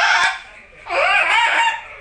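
A high-pitched voice giving two drawn-out, wavering cries without words, the first trailing off just after the start and the second from about a second in.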